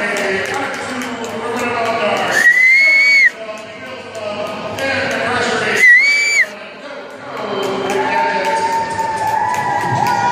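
A referee's whistle blown in two long, steady, high blasts about three and a half seconds apart, the first a little under a second long and the second shorter, each cut off sharply.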